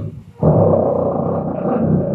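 Beatboxing into a handheld microphone: after a short break, a loud, rough, buzzing bass sound starts about half a second in and is held to the end.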